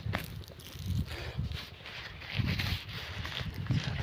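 Footsteps on dry, cloddy field soil: a few irregular, dull steps with some rustle.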